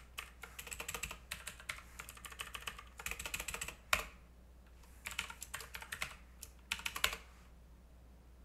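Typing on a computer keyboard in quick bursts of keystrokes while a terminal command is edited, with a harder single keypress about four seconds in and another about seven seconds in.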